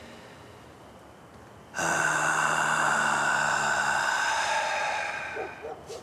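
A man lets out a long, loud, breathy sigh, starting suddenly about two seconds in and lasting about four seconds before fading away.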